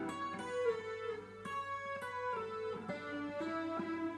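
Gibson SG Special electric guitar playing a slow phrase of single picked notes from a guitar solo, each note ringing into the next as the line moves along one string.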